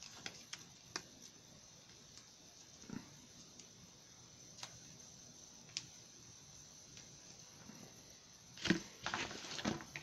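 Faint handling noises as hands ice a toaster strudel: a few scattered soft clicks, then a short cluster of louder knocks and rustles near the end.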